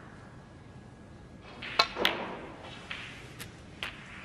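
Snooker shot: a sharp click of the cue tip striking the cue ball about two seconds in, then a louder clack as it strikes a red a moment later. A few fainter ball clicks follow as the red is potted.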